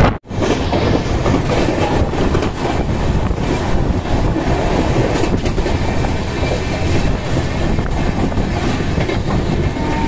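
Running noise of a passenger train at speed, heard from on board: a steady rumble of wheels on rail with clickety-clack and rushing air. The sound breaks off briefly at the very start.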